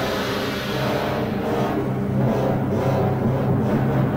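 Orchestra playing the overture to a Korean opera, a loud, dense sustained passage over a held low note, with a steady pulse setting in about a second in.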